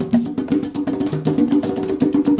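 A pair of Meinl congas played by hand in a fast Afro-Cuban solo: quick strokes, several a second, with short pitched open tones on the two drums at different pitches mixed with sharper, higher strokes.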